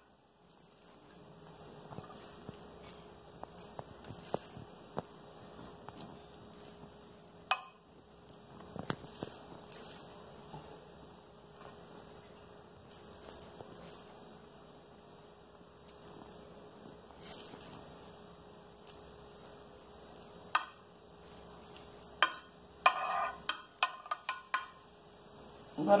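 A metal spoon spreading cooked rice in a glass baking dish: soft scraping, with now and then a sharp click of the spoon against the glass. A faint steady hum runs underneath.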